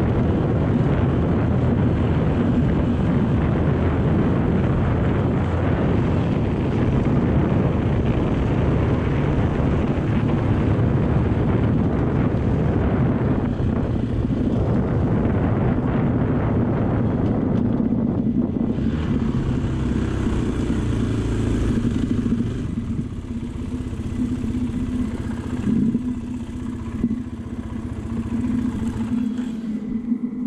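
Motorcycle ridden along a dirt road: engine running with a dense rush of wind and road rumble. After about twenty seconds it gets quieter and a steady engine hum stands out as the bike slows.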